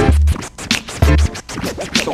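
Hip-hop beat with turntable scratching over deep bass hits, two of them about a second apart.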